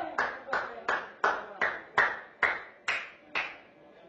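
A series of about nine sharp, evenly spaced hits, a little under three a second, each trailing off in a short echo.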